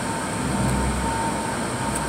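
Steady road and engine noise inside a moving car's cabin, a low rumble that swells briefly in the middle.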